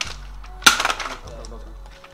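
A sudden, short clatter about two-thirds of a second in, like a hard object knocking and rattling, over a low steady hum.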